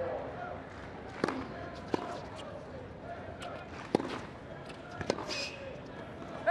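A tennis rally: four sharp racket strikes on the ball, a second or two apart, with the serve first, over a steady murmur of the crowd.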